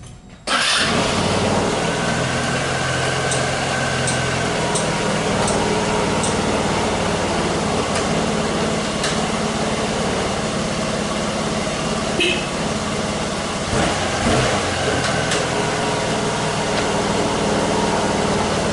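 KYMCO GP125 scooter's 125 cc single-cylinder four-stroke engine starting about half a second in, then idling steadily, run after fresh oil to check for leaks and to test the lights. A light regular ticking, about one and a half a second, runs for a few seconds early on.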